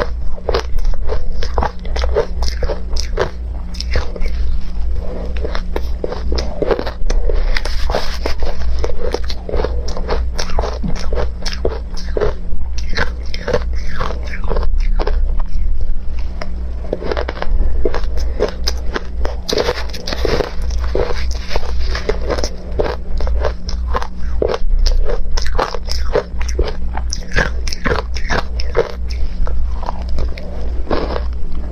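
Close-miked crunching and chewing of crushed ice dusted with milk powder and matcha, bitten off a spoon: dense, crackling crunches throughout, over a steady low hum.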